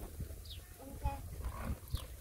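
A young puppy making a few faint, short vocal sounds while held to its mother dog's teats to nurse.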